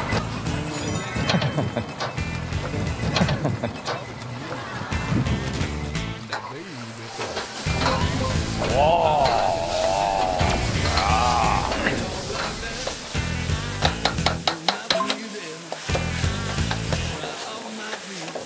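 Diced vegetables and meat stir-frying in a hot wok, sizzling, with a metal spatula clinking and scraping against the wok. Background music plays over it.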